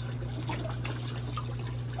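Water trickling steadily into a backyard fish pond, with a steady low hum underneath.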